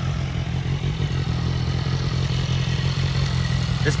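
2011 BMW S1000RR's inline-four engine idling steadily through a Jardine RT5 carbon-fibre exhaust.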